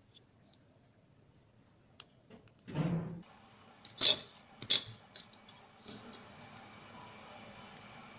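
Sewing tools being handled on a worktable: a brief rustle, then two sharp clacks about half a second apart and a few lighter clicks, as the ruler and pen are put down and scissors picked up. A faint steady hum runs under the second half.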